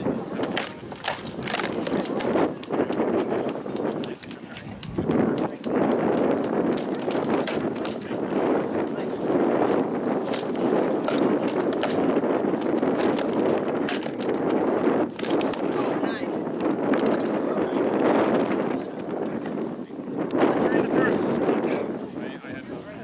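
Rattan swords striking shields and armour in a full-contact armoured bout: sharp cracks and knocks at irregular intervals throughout, over the murmur of a crowd talking.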